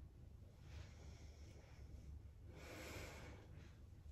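Faint breathing of a woman exercising: a soft breath about a second in and a louder, longer one just under three seconds in, over a steady low hum.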